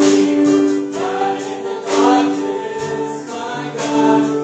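Live worship music: a man and two women singing a song in harmony through microphones, holding long notes, over a keyboard and drum backing.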